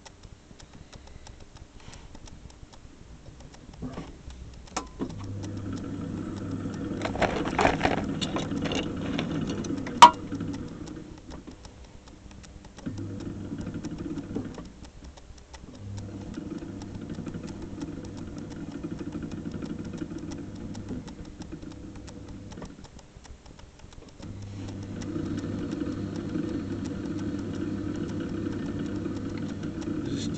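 Electric pottery wheel motor humming, stopping and starting several times, while a leather-hard stoneware tea bowl is centred and turned with a loop trimming tool scraping the clay. A sharp click about ten seconds in.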